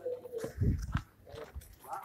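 Handling noise from a phone microphone bumping and rubbing against clothing, with dull thumps about halfway through and short fragments of voice.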